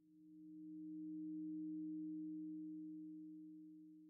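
A steady low two-note tone, like a sine wave, from a cartoon soundtrack: it swells in over the first second or so, then slowly fades.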